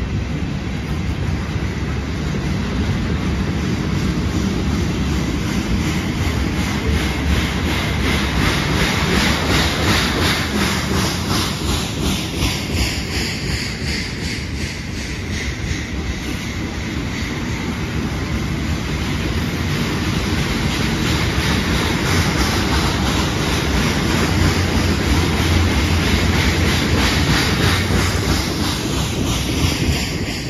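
Canadian Pacific welded-rail train cars rolling past at close range: steady wheel-on-rail rumble with a regular, rhythmic clatter of the wheels.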